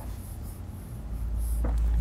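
Stylus scratching across the surface of an interactive touchscreen board as a resistor symbol is drawn, a faint scratchy sound over a low hum that grows louder toward the end.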